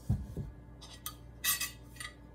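A metal spoon scraping and clinking against a plate as food is served. There are dull knocks at the start, then two short scrapes, the second and louder about a second and a half in.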